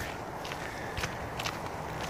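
Footsteps crunching on a dirt trail at a steady walking pace, about two steps a second.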